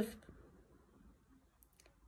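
A few faint, light clicks about one and a half seconds in, as an eyeliner pencil is set down among others on a hard surface, after the tail of a spoken word.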